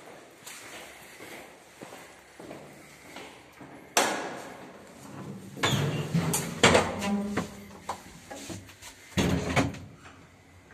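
Doors of a ZREMB passenger lift (ASEA licence) being worked: a sharp clack about four seconds in, a run of clunks and rattles a couple of seconds later, and another thud near the end as the car's doors close.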